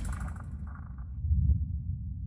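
Deep, low rumble from the sound effect of an animated logo sting, swelling once about a second and a half in and then beginning to fade.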